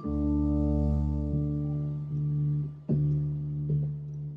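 Instrumental keyboard music: sustained chords held over a deep bass note, with new chords struck about three seconds in and again shortly after.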